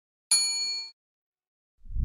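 Notification-bell sound effect from a subscribe-button animation: a single bright ding about a third of a second in, ringing briefly and dying away. Background music starts near the end.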